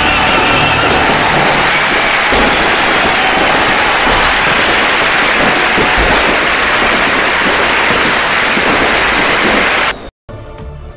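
Dense firecracker barrage, a loud, unbroken crackle that cuts off suddenly at the end.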